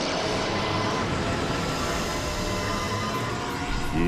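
Drama sound effect for a swirling energy attack: a steady rushing noise at an even level, with faint steady tones underneath.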